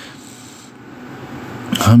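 A man's long, breathy inhale into a close microphone during a pause in his talk, soft and slowly building; his speech starts again just before the end.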